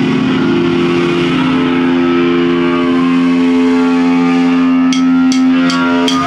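Heavily distorted electric guitar holding one loud chord that rings on steadily, then four evenly spaced drumstick clicks near the end: the drummer counting the band in.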